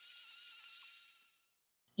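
Cordless drill spinning a paddle mixer in a bucket of thin-set mortar, heard faintly as a steady whine that fades away over about the first second and a half.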